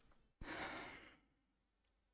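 A single soft sigh breathed out into a close microphone, starting about half a second in and fading out within a second, then near silence.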